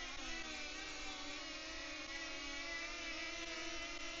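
DJI Flip drone hovering in place, its propellers giving a steady whir of several wavering tones that shift in pitch near the start. The drone is holding still at the end of a direction-track recording, just before it flies back on its own.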